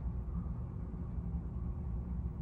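Steady low background rumble of room tone in a large hall, with no other distinct sound.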